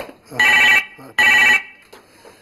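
A telephone ringing: two short electronic rings of a steady high tone, about three quarters of a second apart.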